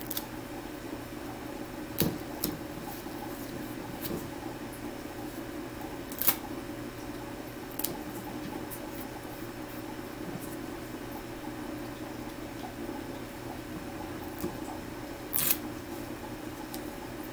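Gloved hands handling and pressing down strips of tape over an IV dressing: a few short, sharp crinkles and taps, about two seconds in, in the middle and near the end, over a steady low hum.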